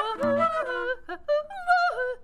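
A woman's voice singing wordless, high improvised phrases in short broken bursts, wavering and sliding in pitch with a yodel-like break.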